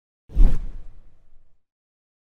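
Whoosh transition sound effect with a deep low hit, starting suddenly about a third of a second in and fading out over about a second.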